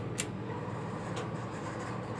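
Dover Impulse elevator car-call button pressed: two sharp clicks about a fifth of a second apart, as the button goes in and comes back out, over a steady low hum in the elevator car.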